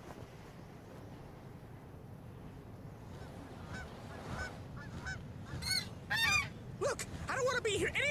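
Canada geese honking: a run of repeated calls that starts faint about three and a half seconds in and grows louder, over a steady low rush.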